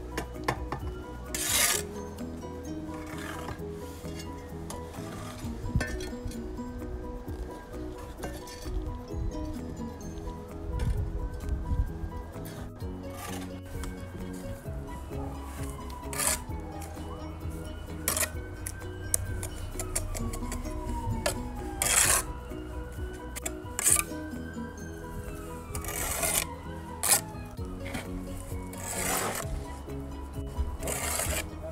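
Background music with held notes, over a steel trowel scraping and spreading mortar and tapping bricks, in short scrapes every few seconds.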